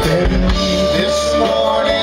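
Live soft-rock band playing through a PA, with guitars and a drum kit, recorded from within the audience.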